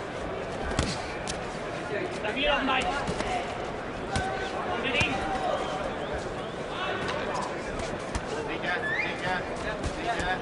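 Boxing arena crowd noise with scattered shouts from the crowd and corners, and several sharp thuds of gloves landing and feet on the ring canvas.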